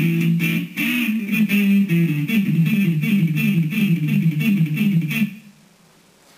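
Clean electric guitar playing a fast, repeating A minor pentatonic lick, alternate-picked on two strings. The run stops abruptly about five seconds in.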